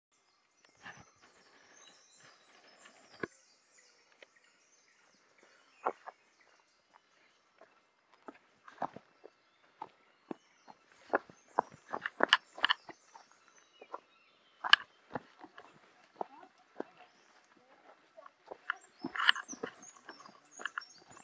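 Footsteps crunching on dry leaf litter and dirt, uneven and sparse at first, then quicker and louder from about halfway. Birds chirp faintly in the first few seconds.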